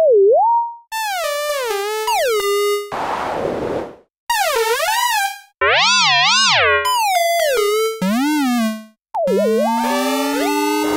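Synthesized tones from the Artikulator iPad app, each drawn stroke sounding as its own tone about a second long whose pitch bends up and down with the stroke's shape. One stroke, about three seconds in, sounds as a hiss instead of a tone. Near the end several gliding tones sound together as the drawing plays back.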